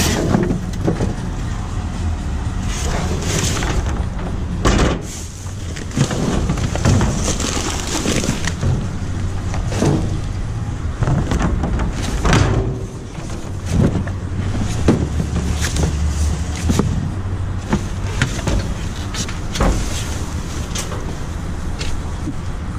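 Rummaging in a dumpster: cardboard boxes and other junk scraping, rustling and knocking as they are lifted and shifted, with many short thumps and clatters. A steady low rumble runs underneath.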